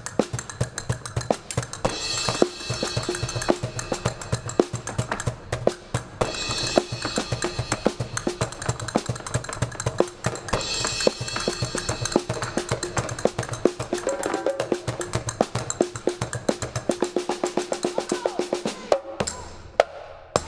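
Live percussion: a djembe and a drum kit with cymbals are played in a fast, dense rhythm together with castanets. There are three cymbal washes, about two, six and ten seconds in. The low drum strokes drop out near the end, leaving mostly rapid clicking.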